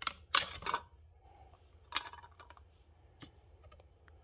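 Sharp metallic clicks and clinks from a tin of wet cat food and a spoon being handled: a quick cluster of loud ones in the first second, another about two seconds in, and small clicks between.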